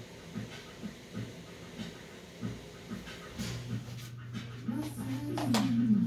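Soft, rhythmic breath-like sounds, about two to three a second. About halfway a low steady note comes in, and music with guitar begins near the end.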